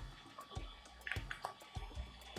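Faint, irregular light clicks and taps of a Sharpie marker being handled and pressed against a servo motor's shaft, over a faint steady whine.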